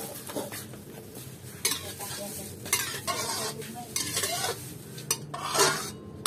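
Metal spatula stirring and scraping in an aluminium wok of hot oil, in a series of separate strokes, with the oil sizzling.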